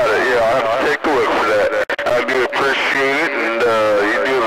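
Speech coming over a CB radio receiver, talking throughout with a brief dropout about two seconds in.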